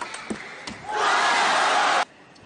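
A couple of sharp table tennis ball hits, then from about a second in a loud burst of shouting and cheering as the rally ends and the point is won. It cuts off abruptly.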